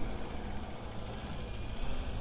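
Distant Mercedes-Benz minibus engine running steadily under load as it climbs a steep, loose dirt slope: a low, even drone with a haze of noise over it.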